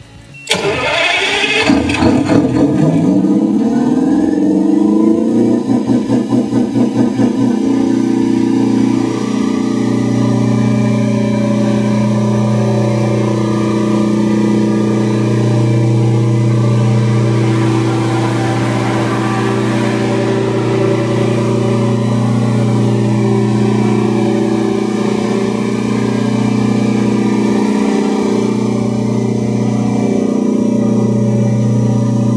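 Detroit Diesel 8V92 two-stroke V8 diesel of a 350 kW generator set starting about half a second in, its pitch rising quickly as it comes up to speed. It surges briefly a few seconds later, then settles into a steady run.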